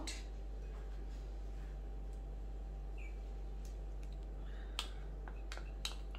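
Quiet steady low hum of the cooktop heating an empty aluminium pressure cooker, with a few faint clicks, the last just before the end.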